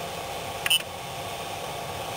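A single short electronic beep from the Creality CR-10's control-panel buzzer about a third of the way in, as a menu item is clicked on the LCD knob, over a steady background hiss.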